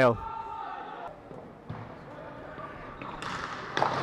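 Sports-hall ambience: distant, echoing voices of players and spectators, with a single sharp knock near the end, like a ball or stick striking on the court.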